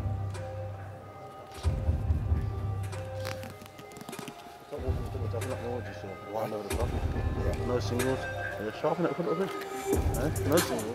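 Arena music with a heavy bass beat, with indistinct voices talking from about halfway through.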